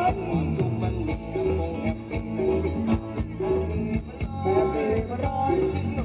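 Thai ramwong dance music from a live band, with a steady beat of bass and drums; a voice sings over it at times, most clearly in the second half.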